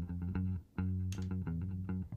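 Soloed bass line playing back over studio monitors as a run of short low notes, with a brief gap just after half a second in. It is heard dry, with the Distressor compressor switched out, and the speaker finds it a little boring this way.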